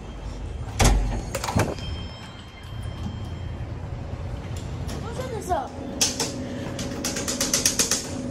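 Two loud knocks about a second in, then a steady hum from an elevator car standing open from about five and a half seconds, with a quick run of clicks and taps near the end as the car's floor buttons are pressed.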